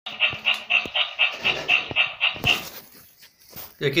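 Sound chip of a ChiChi Love Happy plush toy chihuahua playing a recorded dog sound: a quick run of about ten short, evenly spaced dog noises, about four a second, for the first two and a half seconds, then fading away.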